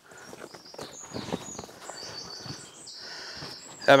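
Soft rustling and handling noise of a cowhide being pulled and spread over a wooden table, with birds singing in the background, a quick high trill in the middle.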